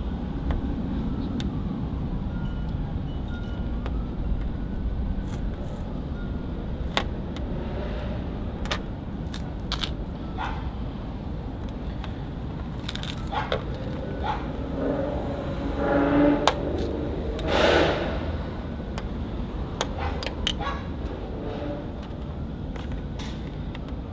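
Braided fishing line sawing back and forth behind chrome trunk-lid emblem letters, cutting through the adhesive: scattered small clicks and ticks, with a few louder scraping rasps about two-thirds of the way through, over a steady low background rumble.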